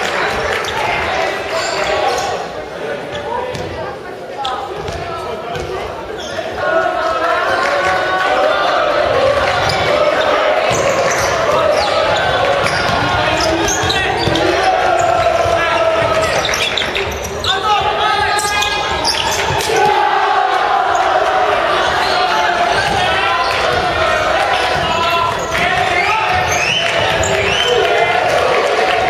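A basketball bouncing on a hardwood gym court during live play, mixed with many voices shouting and calling from players and benches, echoing through a large hall.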